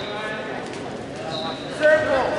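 Coaches and spectators calling out during a wrestling bout, with shuffling from the wrestlers' feet on the mat. A brief, steady high-pitched squeak comes a little past halfway, and a louder shout starts near the end.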